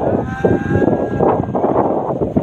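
Several people talking over one another inside a moving vehicle, over the vehicle's steady low running noise. A faint held tone sounds for about a second and a half at the start.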